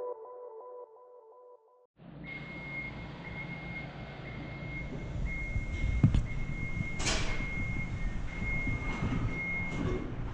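Intro music fades out in the first two seconds. Then a steady room background follows, with a low rumble, a thin steady high-pitched whine, a click about six seconds in and a brief rustle about seven seconds in.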